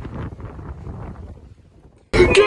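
Wind buffeting the microphone, a gusty low rumble that rises and falls and dies away near the end.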